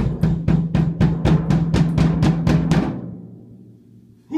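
A drum kit played in a fast, even run of strikes, about five a second, over a sustained low tone. It stops about three seconds in and rings out.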